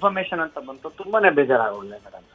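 Speech only: a voice talking over a telephone line, sounding thin.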